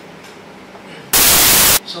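A loud burst of static hiss on the microphone and sound system, lasting under a second and cutting in and off abruptly, as a handheld wireless microphone is brought up for use. Before it there is only a faint room hum.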